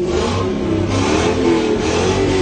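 Ford Mustang engine revved while parked, its pitch rising and falling several times as the throttle is pressed toward high revs.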